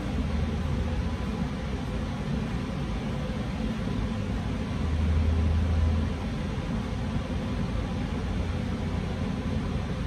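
Steady low hum of background noise, growing a little louder and deeper for about a second in the middle.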